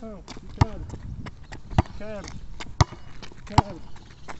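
Basketball dribbled slowly on pavement, a sharp bounce about once a second, with a few short vocal syllables between the bounces.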